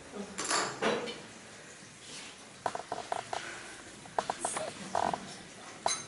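Quiet kitchen handling sounds on a countertop: a couple of brief rustles near the start, then several short runs of quick, light clicks.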